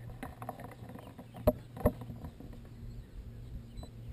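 Boat sitting on the water with a steady low hum, broken by two sharp knocks about a second and a half and two seconds in.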